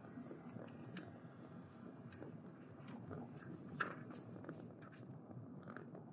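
Faint road noise inside a moving car: tyres rumbling steadily over a brick street, with light scattered clicks and rattles.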